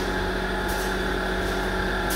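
Steady machine hum with several constant tones from an industrial-size clothes dryer running.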